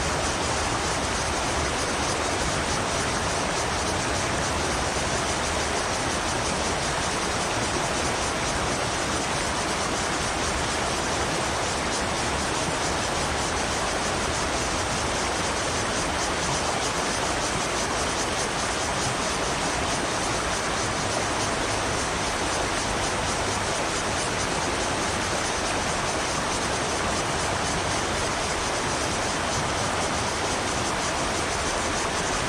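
Steady rush of a fast-flowing river running over a rocky bed, an even unbroken noise throughout.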